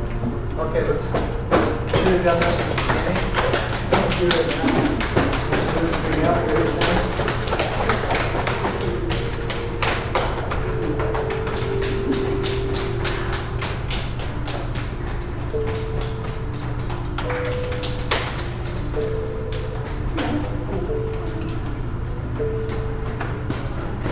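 Slow instrumental music with long held notes, under many quick taps and thuds. The taps come thickest in the first ten seconds and thin out after.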